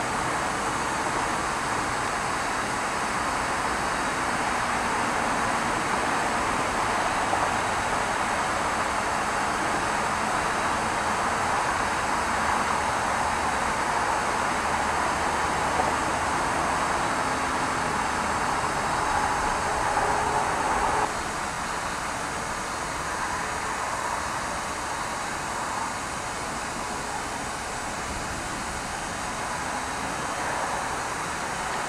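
Steady rushing background noise with no distinct events, which drops suddenly to a lower level about 21 seconds in.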